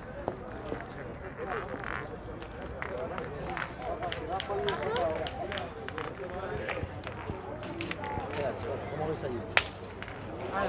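Background voices talk on and off, with scattered small clicks. About half a second before the end comes one sharp, loud clack: a thrown steel pétanque boule landing at the head.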